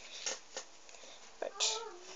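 A boy's voice saying a drawn-out "right" near the end, after a faint tap or two on the table; otherwise a quiet room.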